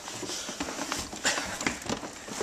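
Irregular rustling and light knocks from the camera being handled and a person clambering into a car trunk, with several sharp taps.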